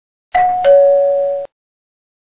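Two-note ding-dong doorbell chime: a higher note, then a lower note that rings on and fades. It starts about a third of a second in and cuts off after about a second.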